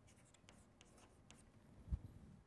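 Chalk writing on a chalkboard: a few short, faint scratches and taps as a label is written, then a single low thump near the end.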